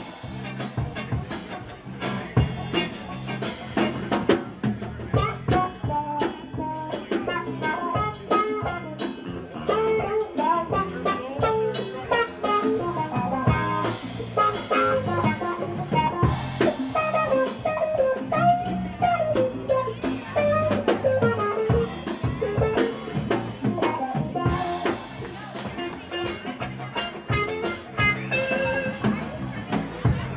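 A rock band playing live: electric guitars and a drum kit in an instrumental break between verses, with a lead line winding over a steady drum beat.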